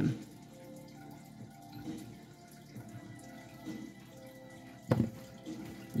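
A single sharp click about five seconds in, over faint steady background tones.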